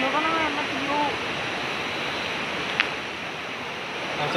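Steady rushing of river water, an even hiss of flowing water, with one sharp click a little under three seconds in.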